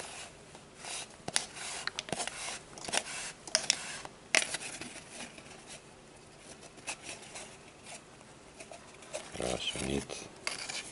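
Cord rubbing and scraping against itself and a cardboard tube as it is pulled through a Turk's head knot by hand: a run of short scratchy rustles in the first few seconds, then quieter handling. A brief voice sound near the end.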